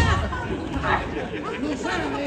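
Spectators' voices overlapping: chatter and calls from an arena crowd.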